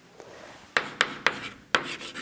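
Chalk writing on a blackboard: a run of short, sharp strokes, about four of them, starting roughly three-quarters of a second in.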